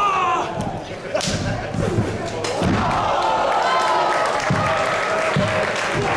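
Wrestlers' bodies hitting the ring canvas: several heavy thuds, the clearest about a second in and again around two seconds in, with voices calling out in the hall through the second half.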